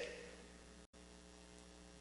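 Near silence with a faint steady electrical mains hum, a stack of even tones, broken by a brief dropout just before a second in.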